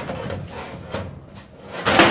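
A heavy metal scoreboard number plate scraping as it is slid by hand down into its slot in the wall, with a louder scrape near the end.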